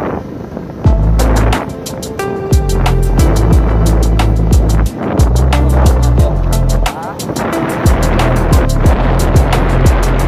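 Background music with heavy bass and a driving drum beat. The beat and bass come in about a second in and drop out briefly twice.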